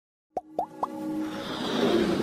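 Animated logo intro sound design: three quick plop effects about a quarter second apart, each a short upward blip, the last a little higher, followed by a steady synth tone and a rising swell that builds into the intro music.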